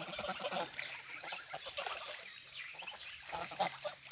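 Young domestic goslings calling softly while they swim, with light water splashing from their paddling and wing-flapping.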